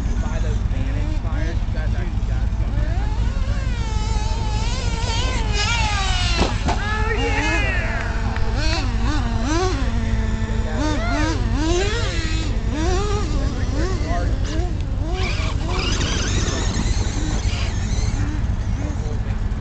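Traxxas E-Revo electric RC monster truck's motors whining as it is driven, the pitch rising and falling again and again as the throttle is worked, over a steady low rumble.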